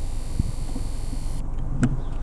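Steady low rumble of a car idling, heard from inside the cabin. A faint high steady tone cuts out about two-thirds of the way through, and there is a single click near the end.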